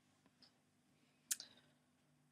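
Near silence: a faint steady low hum, the room tone of an old webcam recording, with one sharp click about a second and a half in.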